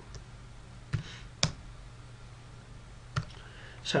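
Computer keyboard keystrokes: three separate clicks, about one second in, again half a second later and once more near three seconds, over a faint steady low hum.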